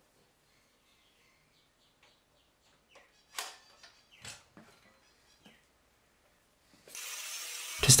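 Mostly near silence, with a few faint short knocks about three and four seconds in as a wooden block is set into the metal jaws of a clamping stand. A faint steady hiss comes in near the end.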